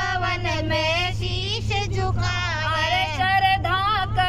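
A woman singing a Hindi devotional bhajan to Balaji into a handheld microphone, in a continuous melodic line with no breaks, over a steady low hum.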